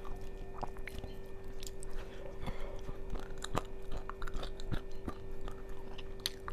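Close-miked chewing and mouth sounds of a person eating by hand, with irregular wet clicks and smacks. A steady low hum runs underneath.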